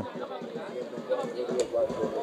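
Faint, distant voices of people calling and chatting at an open-air football ground, over a steady background hum.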